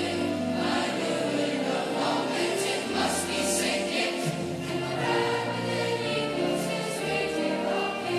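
A junior high school choir singing continuously.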